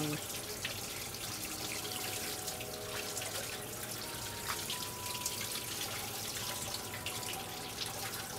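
Kitchen faucet running steadily, the stream splashing onto a gutted fish in a stainless steel sink as it is rinsed out.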